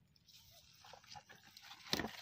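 A hand groping through shallow, muddy field water for snails, making faint small sloshes and drips, with one sharper splash just before the end.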